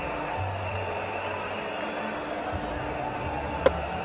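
Steady crowd hubbub in a cricket ground, then a single sharp crack of bat on ball about three and a half seconds in as the batsman plays a cut shot.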